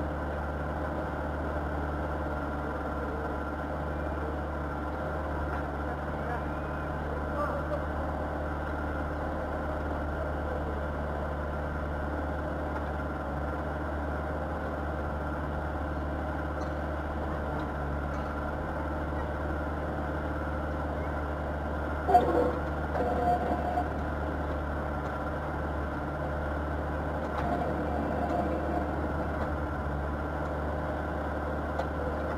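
Backhoe loader's diesel engine running steadily with a low, even drone, and a single sharp knock about two-thirds of the way through.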